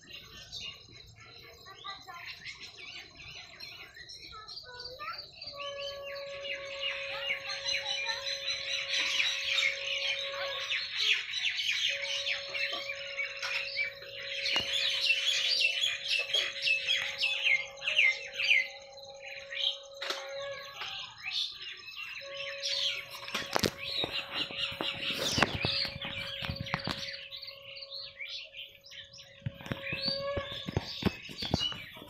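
A large gathering of birds chirping and twittering at dusk, a dense chorus of short high calls that swells after the first few seconds and stays busy. Under it a steady low tone is held in three long stretches, with a couple of sharp knocks near the end.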